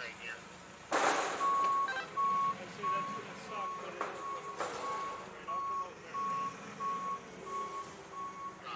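Forklift reversing alarm beeping at about two beeps a second as the forklift backs away. Just before the beeping starts, about a second in, there is one loud burst of noise as the metal barrier section it was carrying comes down.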